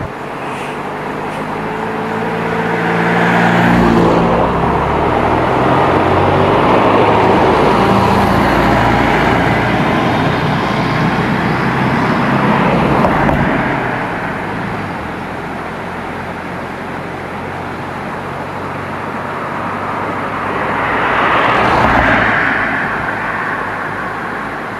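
Road traffic crossing a bridge. A truck's engine hum builds over the first few seconds and its engine and tyre noise stays loud until about halfway through. Near the end a second vehicle passes, swelling and fading.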